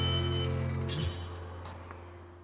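Background music ending on a held chord that fades out steadily.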